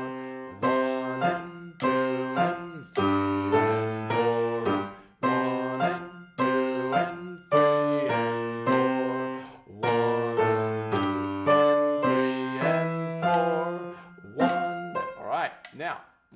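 Acoustic grand piano played slowly with both hands: a simple single-line melody over low bass notes, struck in an even beat with each note left to ring and fade.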